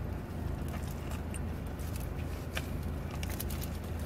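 Eating sounds: a bite into a seeded flatbread wrap and chewing, with scattered small clicks and crackles of the paper wrapper. Under it, a steady low rumble of a car's interior.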